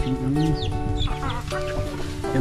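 Domestic chickens clucking, with short calls over background music of held notes.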